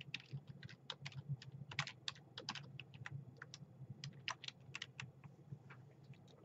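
Typing on a computer keyboard: a faint, irregular run of key clicks.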